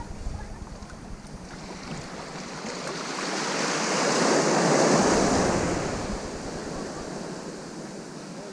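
Gentle sea wave washing in over shallow water right at the microphone, building from about two seconds in to a peak near the middle, then fading away. Light wind buffets the microphone.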